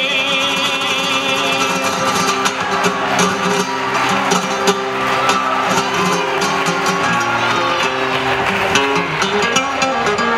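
Flamenco singing and guitar: the singer's held, wavering note trails off about a second and a half in. The acoustic flamenco guitar then plays on alone with plucked melodic runs and occasional sharp strummed strokes.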